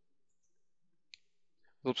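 A single short computer mouse click about a second in, with near silence around it.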